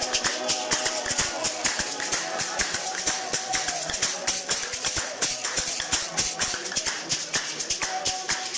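A congregation clapping hands in a fast, dense rhythm, with a shaker rattling along and a sung hymn coming and going underneath, fainter in the middle.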